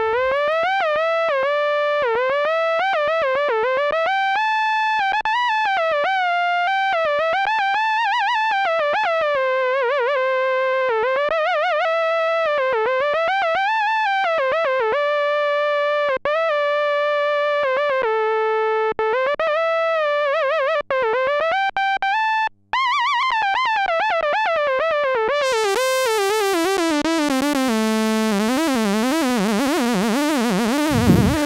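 Roland SH-101 monophonic analog synthesizer playing a solo lead line, one note at a time, each note gliding into the next with portamento and a wavering pitch. Near the end the pitch slides down and a hiss of noise comes in.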